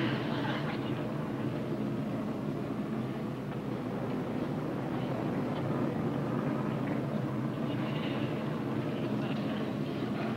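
Steady drone of airliner engines heard from inside the passenger cabin.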